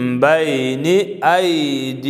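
A man reciting the Qur'an in Arabic in a chanted, melodic style, holding long notes that glide up and down, with a short break for breath about halfway through.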